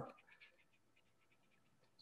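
Near silence, with faint light scratching of a watercolor brush working wet paint on paper, a string of soft irregular strokes.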